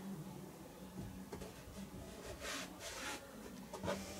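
Faint scraping and rustling of a laminate underlay sheet being slid behind a steel drywall stud, with two short scrapes around the middle and a light tap near the end, over a low steady hum.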